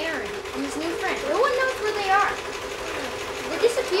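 Boys' voices talking and exclaiming with rising and falling pitch, over a steady mechanical hum.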